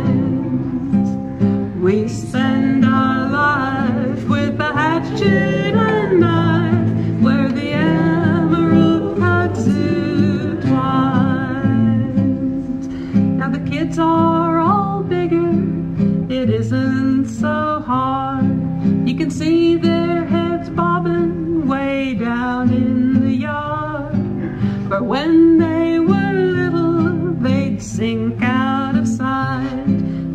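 A live song: a singer accompanied by acoustic guitar, played without a break.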